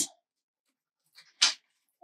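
Near silence, broken once about a second and a half in by a single short, sharp puff of breath.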